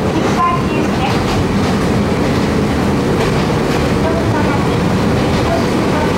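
Kobe Electric Railway 1100 series electric train heard from inside the passenger car while running: a steady, loud rumble of wheels on the rails and running gear. A steady tone comes in over the second half.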